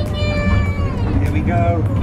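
A toddler's high-pitched, drawn-out vocal squeals and calls, the pitch sliding down at the end of each, over a steady low rumble.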